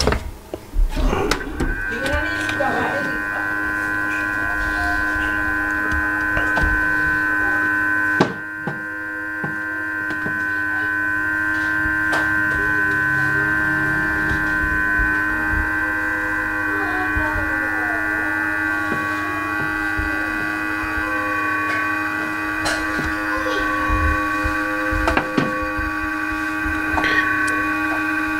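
Hot air rework station blowing on a laptop motherboard to heat and solder in an SMD capacitor. Its blower gives a steady hum with a higher whine above it from about two seconds in, with a brief dip about eight seconds in. There are a few clicks near the start.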